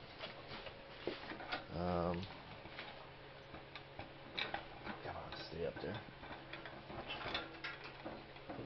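A few light, scattered clicks and knocks over a faint steady hum.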